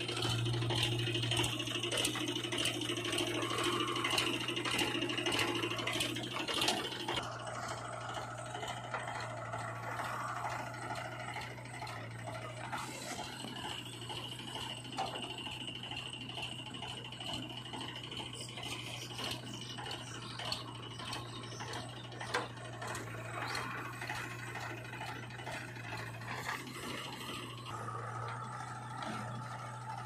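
A JCB 3DX backhoe loader's diesel engine runs steadily while the backhoe digs, with frequent rattles and scrapes from the bucket and arm. A higher whine comes and goes, loudest in the first several seconds.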